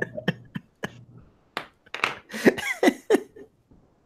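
A man laughing in breathy bursts, with a few short clicks in the first second.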